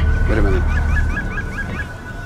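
Bird calls: a honking call, then a quick run of short chirps, about eight or nine a second. A low music bed runs underneath and fades out.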